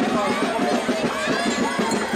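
Many overlapping crowd voices, children's high voices among them, over shuffling and stamping feet.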